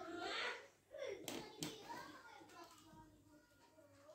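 Faint child's voice talking, with two sharp clicks a little over a second in as the plastic mesh bag of ball-pit balls is handled and opened.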